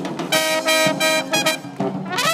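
Live brass band of trombone, trumpet, saxophone and sousaphone playing held chords over a sousaphone bass line, then a few short clipped notes near the end.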